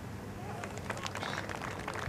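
Hushed outdoor ambience around a golf green, with faint distant voices and a few light ticks.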